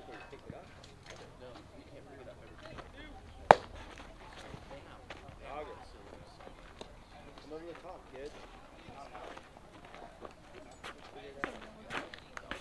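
A single sharp pop about three and a half seconds in, by far the loudest sound: a baseball smacking into the catcher's leather mitt. Faint voices of players and spectators around it.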